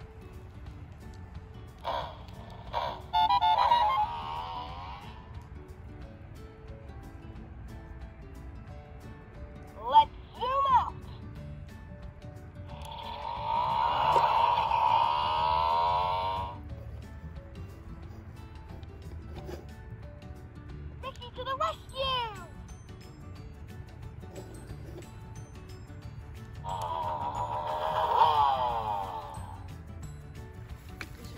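Ricky Zoom Lights & Sounds toy motorcycle playing its built-in sound effects and recorded phrases when pressed: about five separate bursts, short sweeping sounds and longer stretches of voice and music, with pauses between them.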